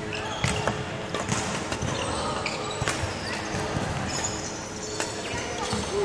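Irregular footsteps and lunging thuds of a badminton player's shoes on a wooden sports-hall court during footwork drills.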